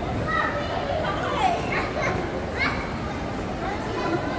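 Children's high-pitched voices calling out several times over the steady crowd noise of a busy shopping-mall concourse.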